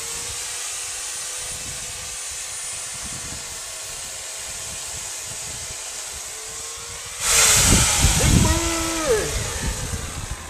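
Corded electric chainsaw running with a steady whine, then, about seven seconds in, cutting into overhead branches: much louder and rougher, its pitch sagging under the load.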